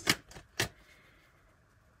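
A deck of tarot cards being handled, giving two sharp taps about half a second apart with fainter ticks between them.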